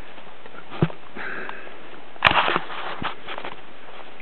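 Footsteps and rustling on the forest floor while walking, with a few short knocks; the loudest crackle comes about two and a half seconds in.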